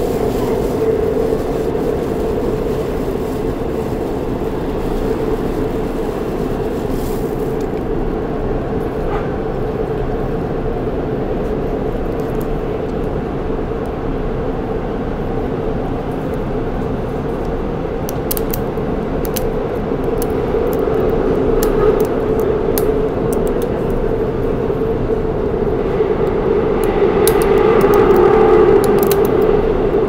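Inside a moving Shinbundang Line subway car: the train runs with a steady rumble and hum that swells twice in the second half, with scattered sharp clicks in the last third.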